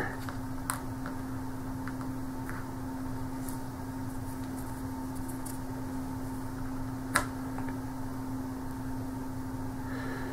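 Light clicks of cardboard wargame counters being set down on a mounted map board over a steady low hum; the sharpest click comes about seven seconds in.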